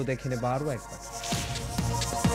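A rising whoosh about a second in, then a TV news bulletin's electronic theme music begins, with deep bass hits under steady synth tones.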